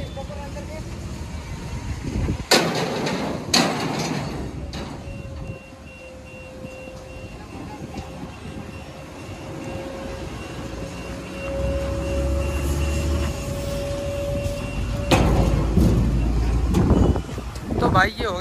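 Hydraulic pump of a car carrier trailer whining steadily as it lifts the big rear ramp door shut, its pitch creeping up before it cuts off. Three loud metal clanks come a few seconds in, and a heavy engine rumble builds near the end.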